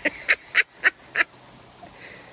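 A man laughing hard in breathy, wheezing gasps, five quick ones in just over a second, then tailing off.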